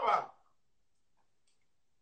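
A man's voice trailing off at the start, then near silence.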